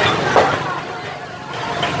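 Motorcycle engine running close by as it edges through a crowd, with voices around it; a short sharp sound comes about a third of a second in.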